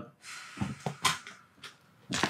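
A woman blowing out a long breath while a chiropractic thrust on her upper thoracic spine pops the joints: a few quick sharp cracks, the loudest about a second in, and one more faint click shortly after.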